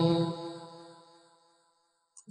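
A voice chanting a Pali Buddhist verse, holding the last note of the line at a steady pitch as it fades away over about a second, then silence.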